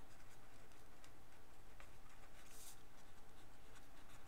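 Felt-tip marker writing on paper: soft, scratchy strokes as a word is written out by hand, with one sharper stroke about two and a half seconds in.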